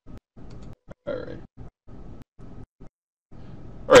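A man's voice drawing out "all... right", with faint noise between the words that keeps cutting in and out to dead silence.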